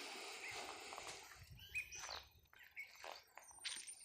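Faint, scattered bird chirps, short high notes, some falling in pitch, with soft footsteps on dry grass and soil.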